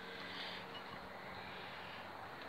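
Quiet, steady outdoor background noise with no distinct event.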